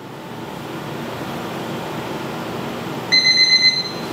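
A steady rushing background noise, then about three seconds in a single loud electronic beep lasting under a second, an interval timer signalling the start of a one-minute exercise round.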